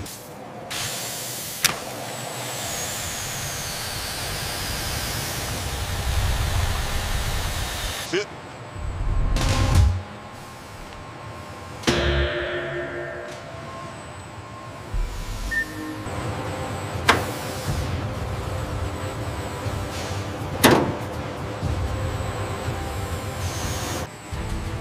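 Industrial machinery sound effects over background music: a steady mechanical hum and hiss, broken by about six sharp knocks spread through.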